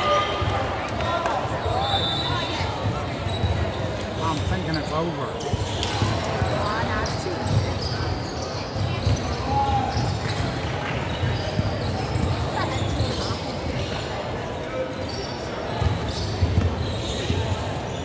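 Basketball bouncing on a hardwood court, with repeated low thumps through the stoppage, under indistinct chatter from players and spectators.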